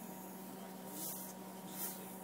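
Salt pouring into a glass bowl of water, a faint hiss that swells about a second in and again near the end, over a low steady hum.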